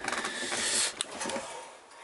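Soft hissing rustle with one sharp click about a second in, fading away near the end.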